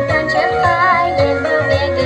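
A young girl singing into a handheld microphone, amplified through PA loudspeakers over a backing track. A held note with vibrato comes near the middle.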